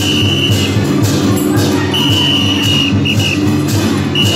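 Dragon-dance accompaniment music: drum beats with cymbal clashes about twice a second, and a high held note that sounds at the start and again in the middle.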